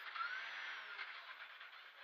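Škoda 130 LR rally car's four-cylinder engine heard from inside the cabin. Its note rises briefly near the start, then fades away.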